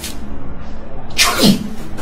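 A man sobbing: one short, breathy cry that falls steeply in pitch about a second and a half in, over soft background music.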